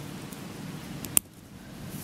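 A single sharp plastic click about a second in: the plastic RJ Clip snapping onto an RJ45 plug whose latch has broken off, standing in for the missing latch. A steady low hiss lies under it.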